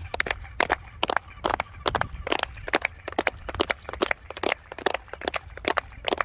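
Sharp hand claps, irregular and several a second, echoing off the stepped stone walls of an open plaza, over a steady low rumble.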